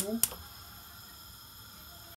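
A metal whisk taps once against the saucepan, then a faint steady hiss with a few thin high tones.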